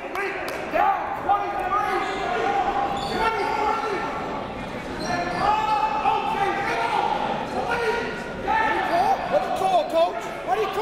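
Basketball gym sounds during a dead ball: players and coaches calling out, with short squeaks of sneakers on the hardwood court, all echoing in a large hall.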